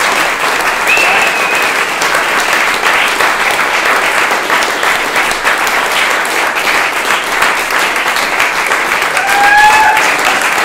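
Audience applauding steadily, with two brief high calls cutting through: one about a second in and one near the end.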